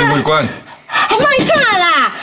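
Dramatic dialogue in Taiwanese Hokkien: a man's voice speaking with strained, agitated delivery, the pitch rising high and sliding down about a second in.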